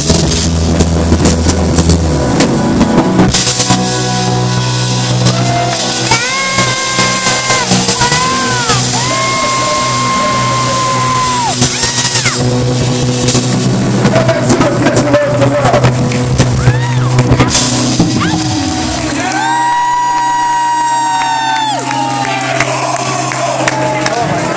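Live band playing a rock-soul song with drums and bass, a singer holding long, wavering notes over it, and the crowd shouting and whooping.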